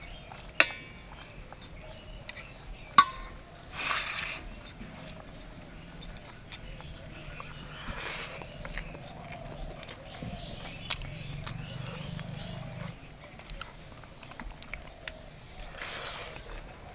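Fingers mixing rice and curry on a metal plate, with a sharp clink about three seconds in, then hand-eating and chewing. A low steady drone runs under it in the middle.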